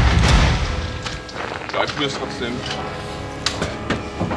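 A loud, deep boom right at the start that dies away over about a second. Background music continues under faint voices.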